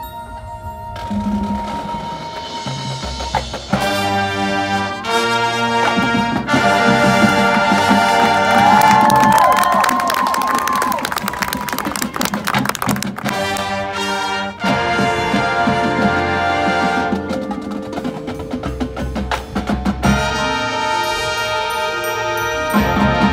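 High school marching band playing live, brass and percussion together. It starts soft, builds, punches out a series of short full-band hits about four seconds in, and reaches its loudest full-band passage in the middle before easing back.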